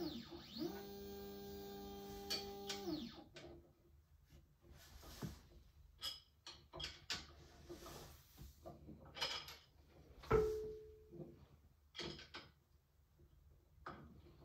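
Stepper motor of a Voxelab Proxima resin printer driving the build plate up its Z axis for about two seconds, its whine rising in pitch as it starts and falling as it stops. After that come scattered clicks and knocks of hands handling the resin vat, the loudest about ten seconds in.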